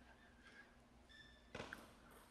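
Near silence, broken about one and a half seconds in by a brief, faint pair of clicks from a table-tennis ball being served: struck by the racket and bouncing on the table.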